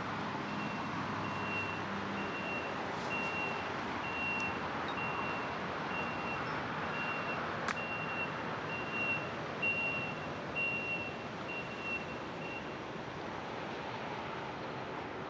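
A vehicle's reversing alarm beeping at one steady high pitch, a little under twice a second, stopping shortly before the end. Steady road-traffic noise runs underneath.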